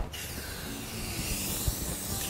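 Aerosol spray-paint can spraying in one steady hiss of about two seconds.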